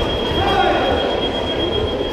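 A single steady high-pitched tone held for about two seconds, over the general murmur and voices of a busy indoor sports hall.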